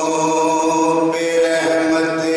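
A man's voice chanting a devotional Urdu poem into a microphone, holding long steady notes and moving to a new note about a second in.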